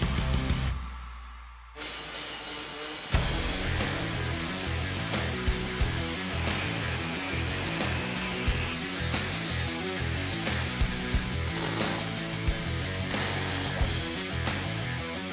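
Background music with a steady beat over metal-shop work: an angle grinder cutting steel bracing and a MIG welder crackling. A short intro sound fades out at the start, and the music and tool noise come in sharply about three seconds in.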